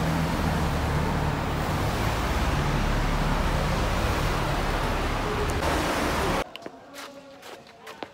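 Steady rumble of car traffic echoing inside a road tunnel. It cuts off abruptly about six and a half seconds in, leaving a much quieter background with a few light knocks.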